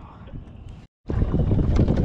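Faint outdoor background noise, then an abrupt cut about a second in to loud wind buffeting the microphone, a low rumble that is the loudest sound here.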